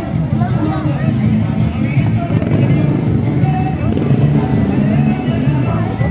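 Spectators' voices talking over the steady noise of motocross bike engines, with music playing in the background.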